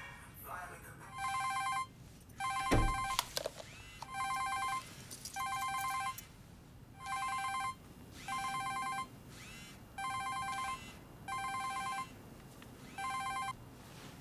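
Mobile phone ringing with an incoming call: a warbling electronic ringtone in double rings, pairs of short rings about three seconds apart, stopping near the end. A single low thump about three seconds in.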